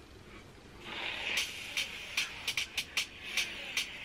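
Fingers scrunching and fluffing damp curly hair close to the microphone. It makes a crackly rustle with many small irregular clicks, starting about a second in.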